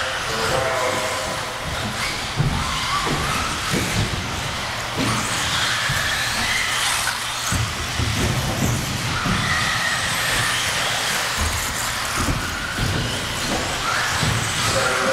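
1/10-scale electric 4WD RC buggies racing on an indoor track, their motors whining up and down in pitch as they speed up and slow down, with occasional knocks.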